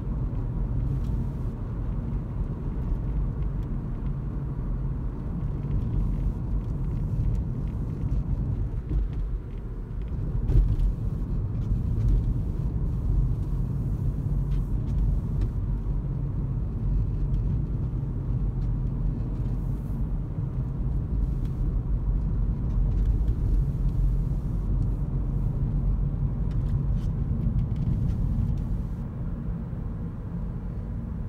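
Steady low rumble of tyre and road noise inside the cabin of a moving Toyota Auris Hybrid, with one brief louder moment about ten seconds in.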